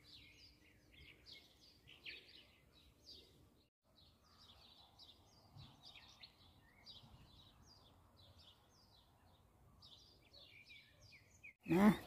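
Small birds chirping, many short high calls in quick succession, faint over a low background hiss; the sound drops out briefly a little before four seconds in.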